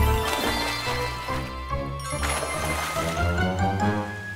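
Cartoon background music, a melody of steady notes. It is broken by two brief noisy swishes, one at the start and one about two seconds in.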